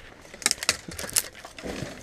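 Footsteps through tall grass and weeds, with stems rustling and swishing against legs and clothing: a cluster of sharp crackles about half a second in, fainter after.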